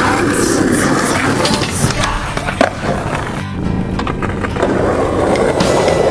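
Skateboard wheels rolling on concrete with sharp board clacks, the loudest about two and a half seconds in, over music with a steady bass line.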